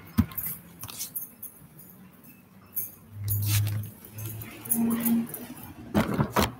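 Handling noise of a phone being carried by hand: scattered clicks, knocks and rustles, with a brief low hum about three seconds in.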